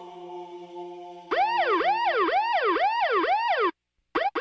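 A steady droning tone, then, just over a second in, a siren yelp that rises and falls about twice a second and cuts off suddenly near the end.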